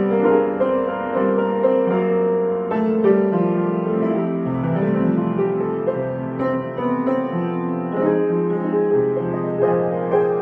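Upright piano played solo, a continuous run of melody over sustained chords in a Christmas song cover.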